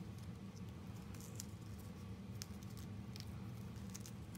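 Faint snips and rustling of scissors cutting into a strip of duct tape and the tape being handled, a few scattered small clicks over a steady low hum.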